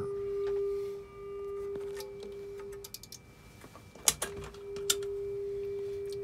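Quilter Tone Block 202 amplifier in its FRFR setting, driven into clipping by a steady test tone and heard through a speaker as one constant mid-pitched tone. The tone drops out a little before the middle and comes back after a few sharp clicks.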